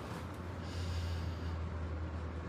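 A soft, airy breath from a person, from about half a second in to about a second and a half, over a steady low hum.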